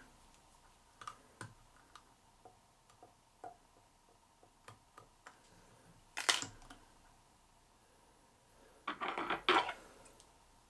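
Small, scattered clicks and ticks of fly-tying tools and materials being handled at the vise. A sharper click comes about six seconds in, and a short run of louder clicks and rattles near the end.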